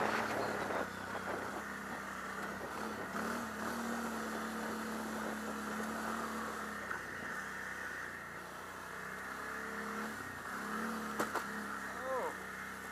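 Can-Am Outlander X xc 1000 ATV's V-twin engine running steadily under way, with brief rises in engine speed about three seconds in and again near the end. A few short clicks come near the end.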